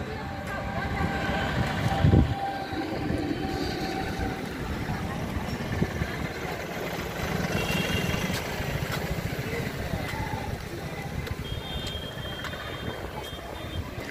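Outdoor street noise: a steady hum of traffic and passing vehicles with indistinct voices. A few short, high beeping tones come late on.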